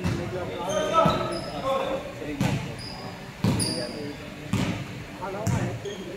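Basketball bouncing on a hardwood gym floor, six bounces about one a second, each echoing in the large hall.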